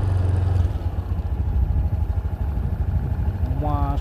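Strong wind buffeting the microphone: a heavy, fluttering low rumble, with an engine running underneath it. A man's voice starts near the end.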